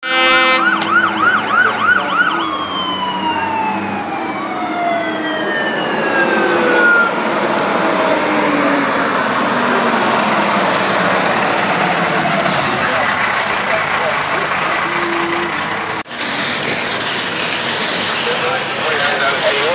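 Fire engine sounding its horn, then a fast wavering yelp siren, then a siren winding down in a long falling whine, over the truck's engine as it pulls up. About two seconds before the end the sound cuts suddenly to a steady noise.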